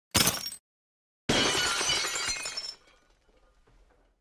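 Glass-shattering sound effect: a short crash, then about a second later a longer shattering crash that breaks off into a faint fading tail.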